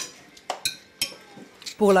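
Cutlery and dishes clinking at a meal: several separate sharp clinks, a couple of them ringing briefly.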